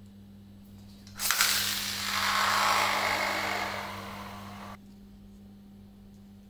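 A Valtryek Beyblade Burst top pulled from its launcher about a second in, then spinning with a whirring that slowly fades on a tile floor. The spin cuts off suddenly when the top is picked up by hand.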